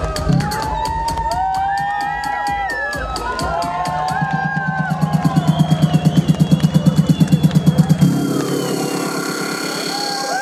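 Electronic dance music on a loud arena sound system, with a crowd cheering and shouting over it. About halfway through a fast pulsing build-up rises, then cuts off about two seconds before the end and the bass drops out.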